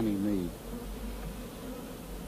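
Honeybees buzzing steadily.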